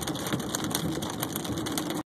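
Hail hitting the car's roof and windshield, heard from inside the cabin as a dense, rapid, irregular patter of clicks, over the low steady hum of the car driving.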